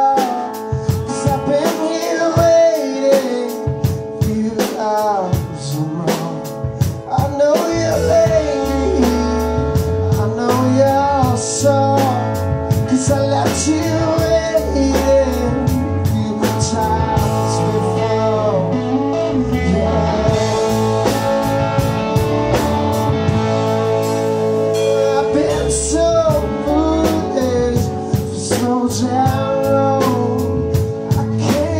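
Live southern rock band playing: electric guitars and a drum kit with a singer's voice over them, the low bass end filling in heavily about eight seconds in.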